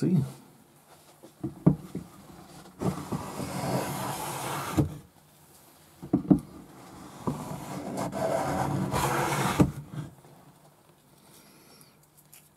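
Kakuri Japanese kanna block plane, a pull plane, drawn twice along a wooden board, each stroke a rough shaving hiss of about two seconds as the freshly sharpened blade cuts shavings. A few sharp knocks come before each stroke as the plane is set on the wood.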